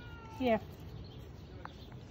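A woman's voice saying one short word with a falling pitch, over faint steady outdoor background noise, with a single faint tick later on.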